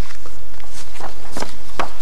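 Sheets of paper being leafed through and handled close to a desk microphone: a few short crisp rustles, the loudest in the second half, over a steady low hum.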